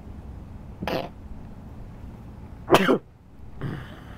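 A person coughing and clearing their throat in three short bursts: one about a second in, a louder one near three seconds, and a weaker one near the end. A steady low rumble runs under them.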